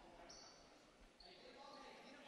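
Faint basketball-gym sound: distant voices, a few short high sneaker squeaks on the hardwood floor, and soft ball bounces.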